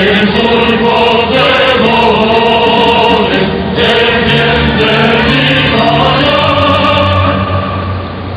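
A choir of many voices singing together in long held notes, with music, dropping away near the end.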